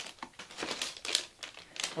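Metallised anti-static plastic bag crinkling as it is picked up and handled, in irregular short rustles.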